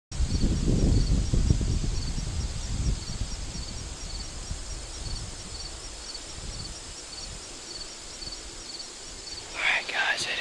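Insects chirping in a steady rhythm, about two high chirps a second, over a low rumble of wind buffeting the microphone that is loudest in the first three seconds and then dies down. A man's voice starts near the end.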